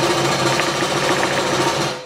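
Craftsman scroll saw running and cutting through an inch-thick block of resin-hardened book paper (micarta), a steady rapid buzz of the reciprocating blade that drops away just before the end.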